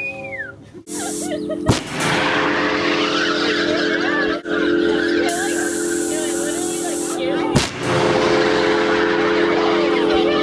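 Acetylene-fired hail cannon going off twice, sharp blasts about six seconds apart, with a steady droning tone and rushing noise between them.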